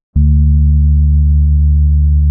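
A loud, deep synth bass note held steady, entering with a click just after a brief break. It is part of an instrumental electronic funk beat.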